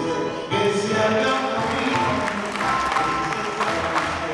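Live tango ensemble of grand piano, double bass and bandoneon playing an instrumental passage of held notes, with no voice singing.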